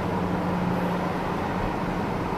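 Steady road and tyre noise inside the cabin of a 2020 Tesla Model S cruising at highway speed, with a low steady hum underneath and no engine sound.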